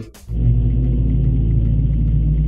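A deep, steady low drone with a gong-like ring, a sound effect laid in during editing; it starts a moment after the last word and holds unchanged.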